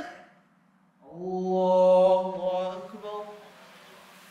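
A man's voice chanting one long, drawn-out phrase, starting about a second in and fading out after about two and a half seconds. This is the imam's takbir, "Allahu akbar", the call that moves the congregation from one prayer position to the next.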